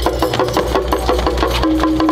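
Traditional Chinese festival percussion: a fast, even roll of drum and wood-block strikes from a drum troupe.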